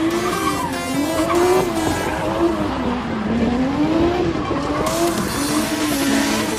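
Drift car's engine revving hard, its pitch swinging up and down every second or so as the throttle is worked through a slide, with tyres skidding on the wet surface underneath.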